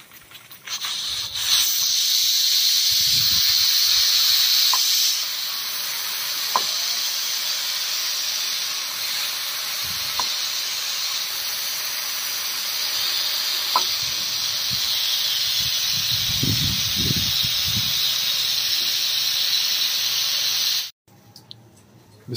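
Steam hissing out of an aluminium pressure cooker's vent as its weighted whistle is lifted by hand: a manual pressure release before the lid is opened. Loudest for the first few seconds, then a steady hiss that cuts off suddenly near the end.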